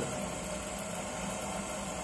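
Steady low hum of a running Citronix Ci1000 continuous inkjet printer.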